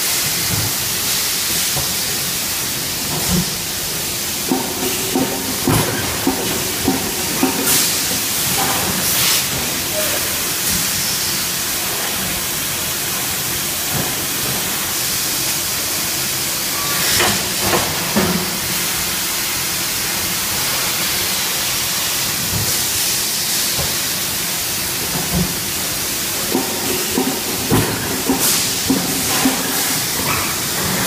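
Pneumatic bottle leak tester on an extrusion blow molding line: a steady hiss of compressed air, with clusters of short clicks and knocks a few seconds in, around the middle and near the end.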